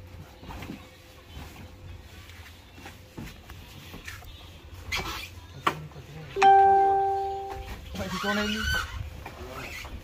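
A horn sounds once about six and a half seconds in, a single loud steady tone lasting just over a second and fading away. Before it come scattered light knocks and handling noises as the scooter is manoeuvred.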